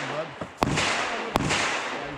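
Two gunshots from shooting on the range, about three-quarters of a second apart, each a sharp crack, with people talking faintly behind.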